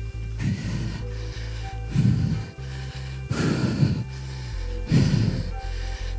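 Workout music with a steady bass line, over which a rider breathes hard four times, about a second and a half apart, straining through a hard interval effort on an indoor trainer.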